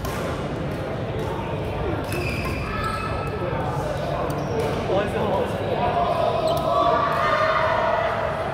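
Badminton play in a large, echoing sports hall: sharp racket hits on shuttlecocks and the players' shoes squeaking on the court floor, with chatter from other players throughout and voices calling out more loudly near the end.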